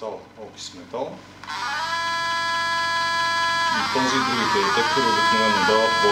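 Audio returned by a nonlinear junction detector in audio mode from a hidden smartphone's speaker. Brief speech-like sounds come first, then from about a second and a half in a steady, musical chord of several tones that changes pitch about four seconds in.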